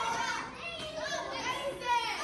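A group of children shouting and chattering over one another as they run about playing a game, their voices carrying in a large hard-floored hall.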